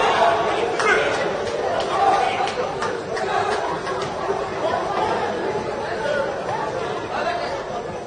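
Many voices talking over one another in a large, echoing hall: spectator chatter in a judo arena, with a few short clicks.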